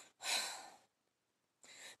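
A woman's breath between sentences: one audible exhale about a quarter second in, lasting about half a second, then a short breath in just before she speaks again.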